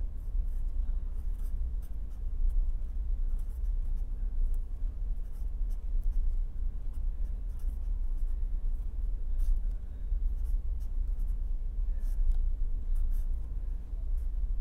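A pen scratching on paper in many short strokes as an equation is written out, over a steady low hum.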